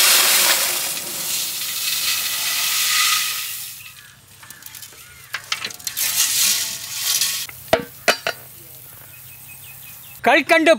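Fried boondi (small gram-flour droplets) poured from a large vessel into a big metal pot: a dense rushing patter of many small pieces that starts suddenly and fades over about four seconds, followed by a few scattered clicks.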